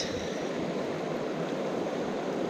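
Small mountain stream rushing steadily over rocks, running high after heavy rain.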